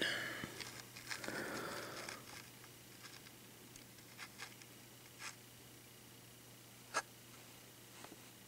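Faint handling noise in a quiet room: a soft rustle early on, a few light clicks, and one sharper click about seven seconds in, as a plastic blister-packed toy car is held and turned.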